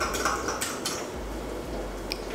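A spoon scraping and clinking against a small cup as sauce is spooned out: a few short strokes in the first second, then quieter.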